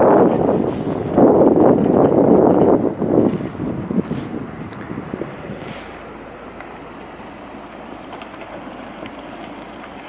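Wind rushing over the microphone of a moving bicycle, loud and gusty for about the first three seconds, then dropping to a low steady hiss as the ride slows.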